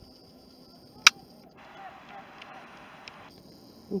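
A single sharp click about a second in, followed by a handheld camera's zoom motor whirring quietly for about two seconds.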